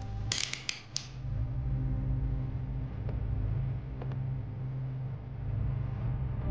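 Handcuffs ratcheting shut on a wrist: a quick run of metallic clicks within the first second, over a low steady drone.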